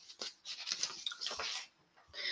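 Faint handling noise: a few small clicks and rustles as a miniature whisky sample bottle is handled.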